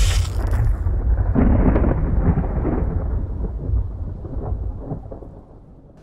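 Thunder sound effect: a deep rumble with rain-like hiss and crackle, dying away gradually until it is faint near the end.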